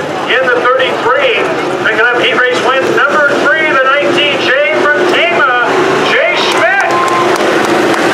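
Several voices talking at once in a grandstand crowd, with a steady rumble of race-car engines underneath.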